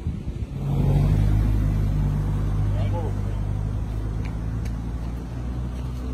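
A motor vehicle's engine running steadily close by, a low even hum that starts about half a second in, with faint voices in the background.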